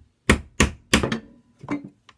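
Hand chisel chopping down into a small wooden frame piece to cut out steps: a run of sharp knocks about a third of a second apart, then one more after a short gap.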